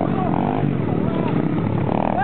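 Several 50cc mini dirt bike engines running and revving as the bikes ride the track, a steady, loud engine drone with a few short rising and falling notes on top.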